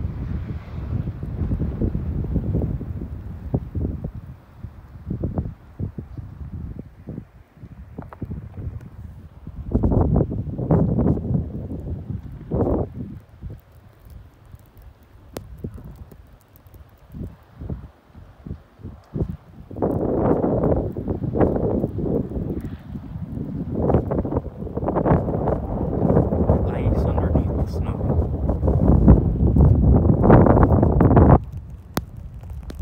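Strong gusty wind buffeting the microphone: a rough, low rumble that comes and goes in gusts, easing off around the middle and blowing hardest in the last third.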